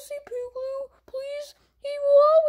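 A child's high voice making a run of about four short, nearly level held notes without clear words, each broken off by a short gap.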